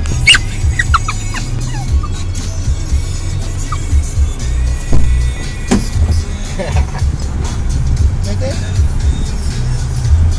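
Car cabin rumble from driving, with a few short high squeaks in the first second or two.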